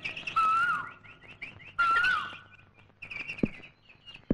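Birds chirping in a dawn chorus: many quick, repeated high chirps, with two louder whistled calls that rise and then fall, one about half a second in and one about two seconds in.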